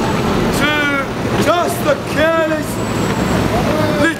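Steady city-street traffic noise from passing buses and cars, with a person's voice heard in three short phrases during the first three seconds.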